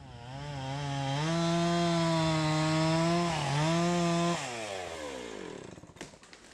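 Gas chainsaw revving up to full throttle and holding high, dipping briefly, then the throttle released so the engine's pitch falls away.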